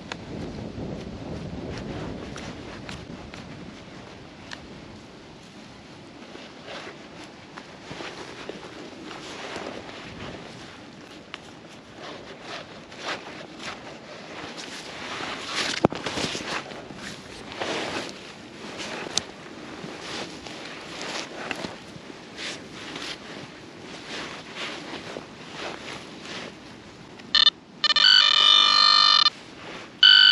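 Scraping and rustling of digging in turf and soil, with scattered clicks. Near the end a metal detector's electronic target tone sounds loudly as a pulsing buzz for about two seconds, signalling a metal target, here a coin.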